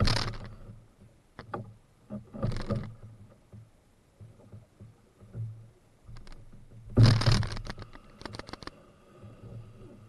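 Canoe paddle strokes: three splashing, knocking bursts, the loudest about seven seconds in, with a few light clicks between them.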